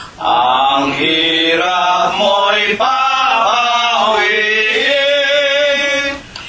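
Voices singing the chorus of a Tagalog hymn in long sustained phrases, with a short breath about three seconds in.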